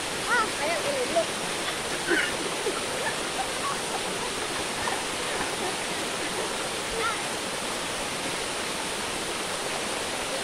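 Small waterfall pouring into a shallow rock pool: a steady, even rush of falling water.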